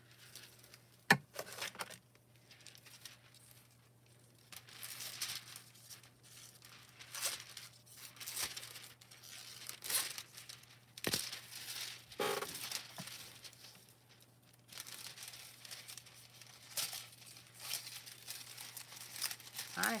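Thin metallic hot-foiling transfer foil crinkling and rustling in short irregular bursts as it is handled and cut from a roll with scissors, with one sharp click about a second in.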